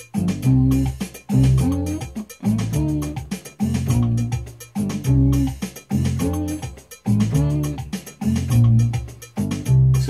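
Yamaha PSR arranger keyboard playing a highlife groove in F: a left-hand bass line moving through the chords over a steady drum and percussion rhythm.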